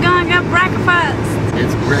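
Steady low hum of a car's engine and road noise heard inside the cabin, with a woman's voice over it in the first second.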